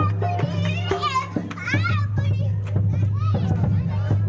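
A man's voice through a microphone and loudspeaker, singing or chanting with wavering pitch, mixed with other voices, over a steady low drone.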